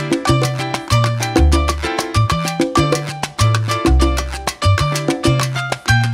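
Instrumental passage of a salsa recording: the band plays without vocals, driven by a deep, recurring bass line and busy, evenly spaced percussion, with pitched instrument notes above.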